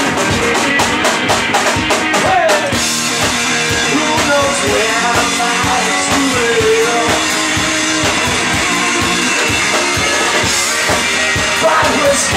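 Live blues-rock band playing: drum kit and guitar, with a lead line that slides up and down in pitch in the first half.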